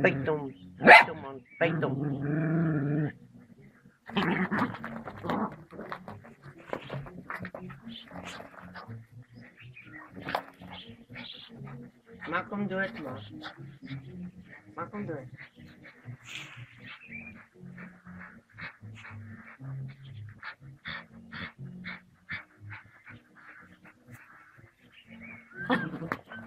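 A small dog barking and growling in short, repeated bursts as it attacks a snake, with people's voices alongside.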